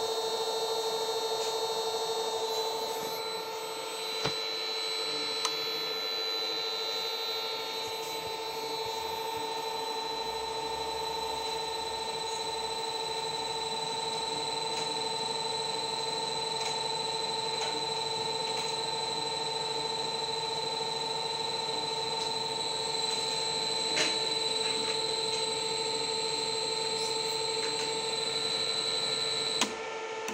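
Steady electrical whine and hum from a Lenze SMVector frequency inverter running under test after repair, several fixed tones held without change. A few faint clicks come in along the way.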